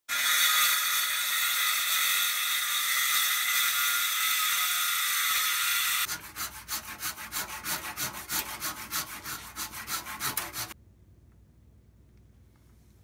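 A circular saw running and cutting through wood, a steady high whine for about six seconds that stops abruptly. Then a handsaw cuts wood in quick, even back-and-forth strokes, about three a second, for some four and a half seconds.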